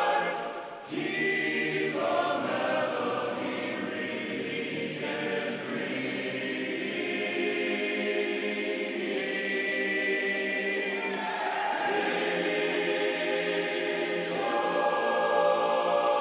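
Men's voices singing a cappella in close barbershop-style harmony. Shortly after the start the sound briefly drops away, then the singing resumes.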